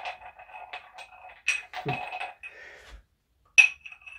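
A magnet clicking and rubbing against a glass tumbler, with light clinks that leave the glass ringing briefly; the sharpest clink comes near the end.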